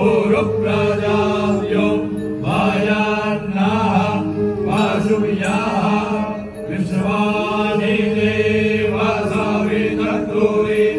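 Several male priests chanting Vedic Sanskrit mantras together into microphones, in long rising and falling phrases over a steady held note.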